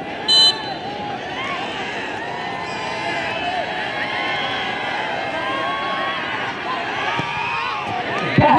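A referee's whistle blown once, short and shrill, about half a second in, signalling the penalty kick. Then many spectators chatter and call out steadily as the kick is awaited.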